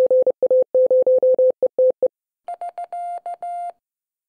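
Morse code sent as an on-off keyed beep: a run of short and long tones lasting about two seconds. After a brief pause, a quieter, higher and buzzier tone keys out more dots and dashes.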